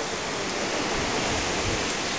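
Ocean surf churning into white water among rocks, a steady rushing noise.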